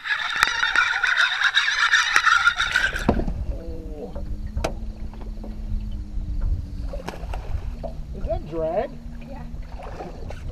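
Water noise picked up by an underwater line camera: a loud hiss with clicks and knocks, ending abruptly about three seconds in. After that comes wind rumbling on the microphone aboard a boat, with a steady low hum and a couple of brief voices.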